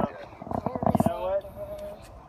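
A person's voice, not in words: a rapid buzzing rattle about half a second in that slides into a short held tone.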